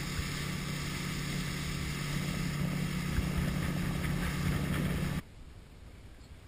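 Outboard motor of a small expedition boat running steadily, a low hum under a steady hiss, which cuts off suddenly about five seconds in.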